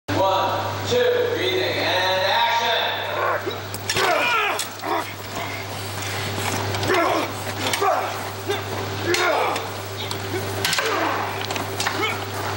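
People's voices calling out in short swooping shouts over a steady low hum, with a few sharp short knocks or clinks among them.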